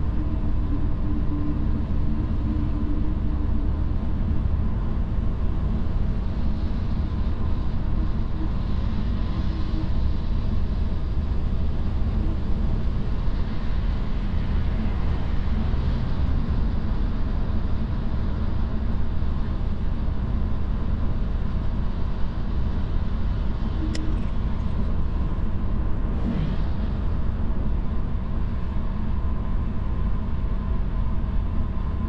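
Steady tyre and road noise heard from inside the cabin of a Tesla electric car cruising on a snowy highway, a low rumble with no engine note. A single sharp click comes about three-quarters of the way through.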